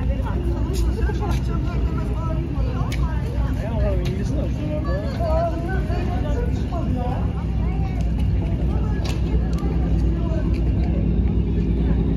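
Outdoor ambience: a steady low rumble with indistinct voices of people talking nearby.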